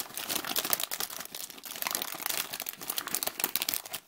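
Foil blind-bag wrapper crinkling and crumpling in the hands close to the microphone: a dense, irregular run of crackles.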